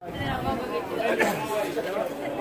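Several people talking at once in a street crowd, with a woman laughing near the start.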